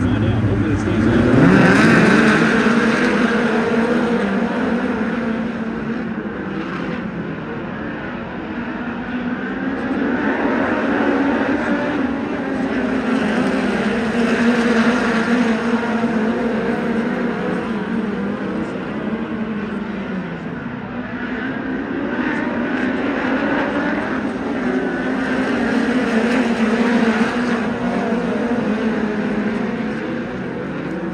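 A pack of USAC midget race car engines running laps on a dirt oval. The pitch rises about a second or two in, then holds fairly steady, and the sound swells and fades as the cars pass.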